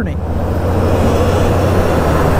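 Semi-truck with a dump trailer passing close alongside a motorcycle: its tyre and engine noise swells about half a second in and then holds, over a steady low hum from the motorcycle.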